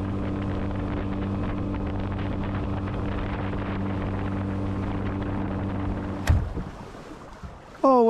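Boat running across a lake under outboard power: a steady engine hum with water and wind rushing past. About six seconds in there is a sharp click, the hum drops away, and quieter water and wind noise is left.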